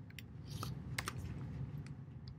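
Computer keyboard typing: a few short, irregularly spaced keystrokes over a low steady hum.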